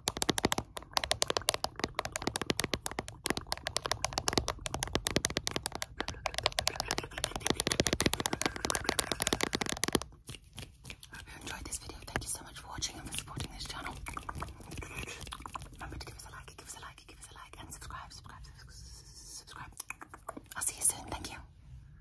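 Short fingernails tapping and scratching fast and close to the microphone, a dense run of rapid clicks. About ten seconds in it drops suddenly to softer, sparser scratching, with a few sharper taps near the end.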